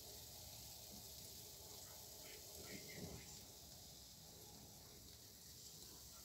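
Near silence: room tone with a faint steady hiss and one brief faint sound about three seconds in.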